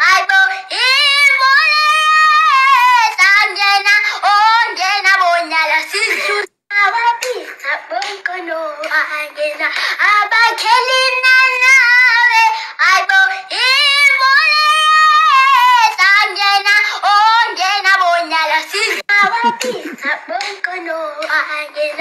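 A high-pitched singing voice carrying a melody with a wavering pitch, breaking off briefly about six and a half seconds in.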